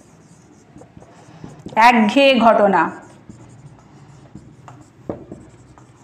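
Faint writing sounds in a small room, broken about two seconds in by a brief drawn-out vocal sound from the tutor, lasting about a second.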